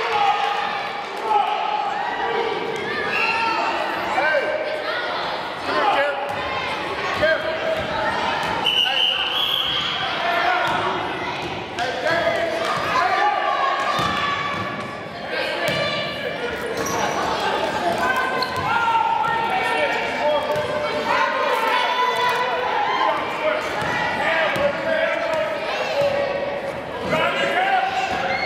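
Basketball bouncing and being dribbled on a hardwood gym floor, with many overlapping voices of players and spectators ringing in the hall.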